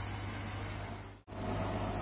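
GCC LaserPro laser cutter running on a cardboard cutting job: a steady hum and hiss, which drops out for an instant a little past a second in.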